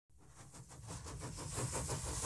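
Mechanical sound effect fading in from silence and growing louder: a hiss with a rapid, even clatter, about ten strokes a second.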